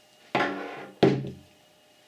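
A small 12-volt battery box being set down on a wooden table: two thunks about two-thirds of a second apart, each dying away quickly.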